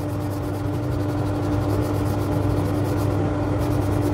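Wood lathe running steadily with a constant hum while 120-grit sandpaper rubs against the spinning oak handle, sanding out a tool-mark ring.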